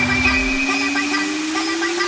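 Electronic music build-up: a single held synth note slowly gliding upward in pitch over a steady hiss, with no beat.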